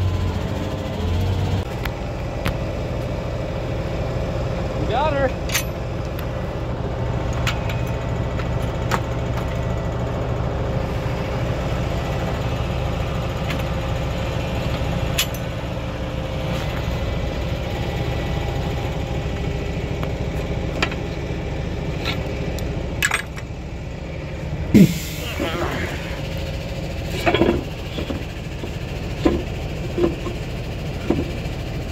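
Tractor engine idling steadily, with scattered sharp metallic clanks and knocks from the hitch and implement being lined up, several close together near the end.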